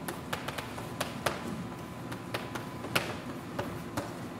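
Chalk tapping against a blackboard while writing: an irregular run of sharp clicks, two louder ones about a second in and near three seconds in.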